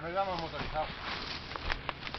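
A man's voice says a drawn-out "no", followed by a few faint clicks and rustles in the second half.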